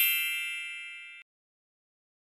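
A bright, bell-like ding sound effect, several high tones ringing together and fading, then cut off abruptly a little over a second in, leaving dead silence.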